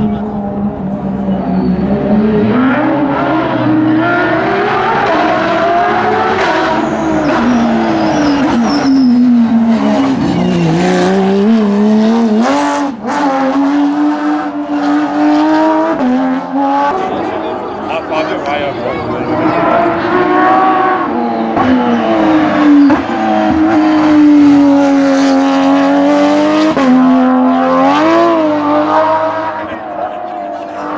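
Porsche GT rally car's flat-six engine revving hard, its pitch climbing under acceleration and falling away on braking, again and again through a series of corners. The engine note changes abruptly a few times where one pass gives way to another.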